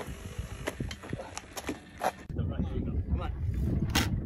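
Pneumatic air brakes on a 1/5-scale Skymaster F-16 RC jet being worked on compressed air: a run of short sharp hisses and clicks over the first two seconds, then low rumble.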